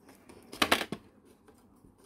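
Chain-nose pliers gripping and working a bundle of twisted fine wire: a short burst of clicks and scraping a little over half a second in, then quiet.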